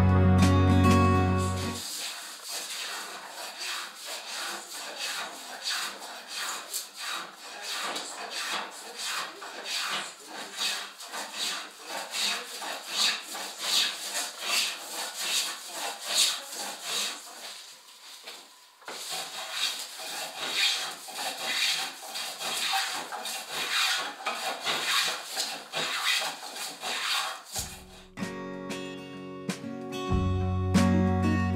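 Hand tool shaving and rasping wood in quick, repeated strokes, with a short pause about two-thirds of the way through. Acoustic guitar music plays at the start and comes back near the end.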